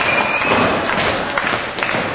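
Loud, noisy crowd at a wrestling show, with several sharp thuds of impacts in the ring and one long, high whistle that fades out within the first second.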